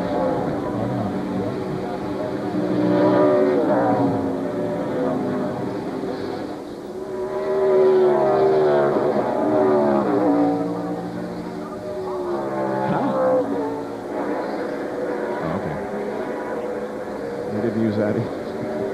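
NASCAR Winston Cup stock cars' V8 engines racing through a road course, their notes repeatedly climbing and falling as the cars shift, brake and pass by.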